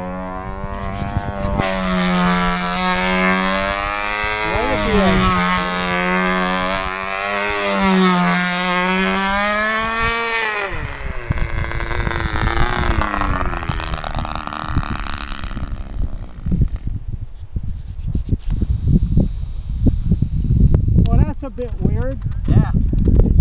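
OS Max-S .35 glow two-stroke model engine running on a control-line stunt plane in flight, its pitch rising and falling with each lap. It runs rich, almost ready to break from four-stroking into a clean two-stroke run. About ten seconds in the engine winds down and stops, leaving low gusty wind rumble on the microphone.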